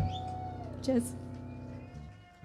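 A held electronic keyboard tone that stops a little under a second in. About a second in there is a short sliding voice-like cry, and then faint ringing tones die away as the music ends.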